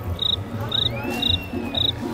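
Cricket-like chirping, a short high chirp about twice a second, over background music with a steady low beat. A gliding tone rises and falls through the second half.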